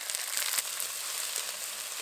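Ground onion paste sizzling in hot oil in an aluminium kadai, with a steady hiss and scattered crackles, as it is stirred with a metal spatula.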